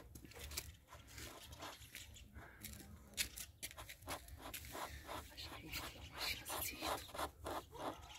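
Faint, irregular series of short scrapes as the tip of a scratch-repair pen is rubbed along a scratch in a car's painted body panel.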